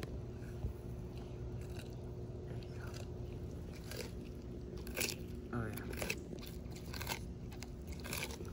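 Sulcata tortoises biting into a whole cucumber: scattered, irregular crisp crunches and snaps as they bite and chew the raw flesh.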